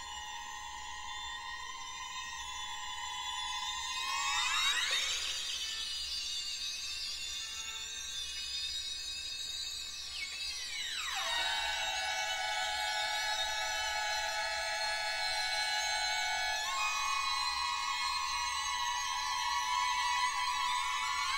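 Orchestral horror film score played from a vinyl record: a sustained, eerie high chord that glides upward about four seconds in, then slides back down about eleven seconds in and holds.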